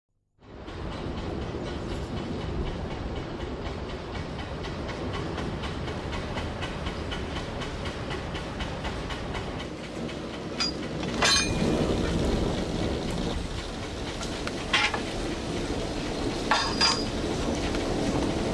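Coal-fired steam boiler at work: a steady rumble and hiss, joined from about ten seconds in by sharp metal clanks as the iron firehole door is worked and the fire is stoked.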